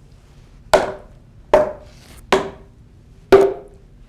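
Hammer sounding on a timber pile cap: a steel pick-head hammer strikes the wood four times, about a second apart, each blow a sharp knock with a short ring, the last the loudest. The strikes test the timber for internal decay or deterioration.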